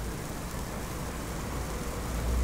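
Steady hiss with a deep rumble underneath: background ambience, without music.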